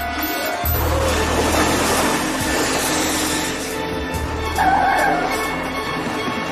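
Dramatic background music over an SUV pulling away fast, its engine and tyres giving a rushing noise for the first few seconds, with a short wavering squeal about five seconds in.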